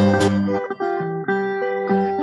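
Brazilian violas (viola caipira) picking a baião accompaniment between sung verses: plucked notes in quick succession that ring on, with the low bass notes dropping out about half a second in.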